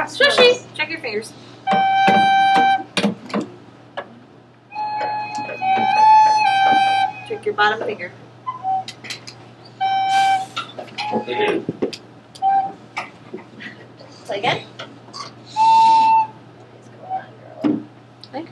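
School recorders played by a class of beginners: a few short, separate held notes around G and A, several instruments sounding together slightly out of tune, with breaks between phrases. Voices and small knocks fill the gaps.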